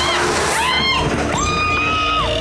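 High-pitched voices shrieking: a short rushing noise at the start, then rising-and-falling cries and one long held shriek in the second half.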